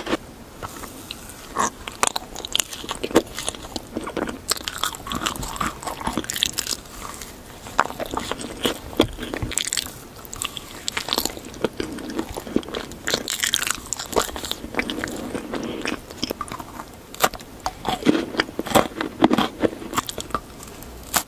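Close-miked bites and chewing of Christmas sweets: a string of sharp crunches from biting through crisp candy coating and cookie, with softer chewing between them.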